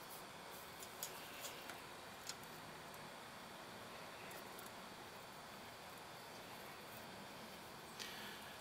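Quiet room tone with a few faint small ticks from soldering work on an alternator's rectifier posts, bunched in the first two and a half seconds.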